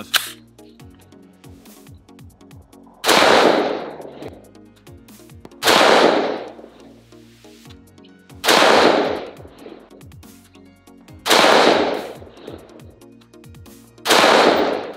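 CMMG Mk57 Banshee 5.7x28mm AR-15 pistol fired in slow single shots: four sharp shots, each about two and a half to three seconds after the last, each trailing off in a short echo.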